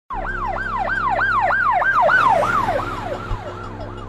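Electronic police siren in fast yelp mode, its pitch sweeping up and down about three times a second, starting abruptly and fading away in the last second or so.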